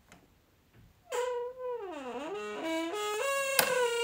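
Door hinge creaking as a door is slowly pushed open: one long creak starting about a second in, its pitch sliding down, then climbing back up in small steps.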